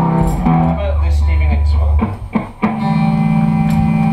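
Rock band playing live in a small room: electric guitar, bass guitar and drums. There is a brief drop with a few sharp drum hits about two seconds in, then the band comes back in on a long held chord over a steady bass note.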